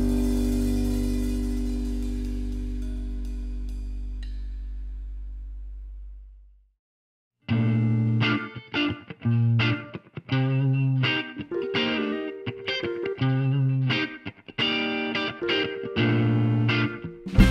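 A held final chord rings and fades out over about six seconds. After a second of silence, a Telecaster-style electric guitar plays a choppy, stop-start chord riff, opening a new song.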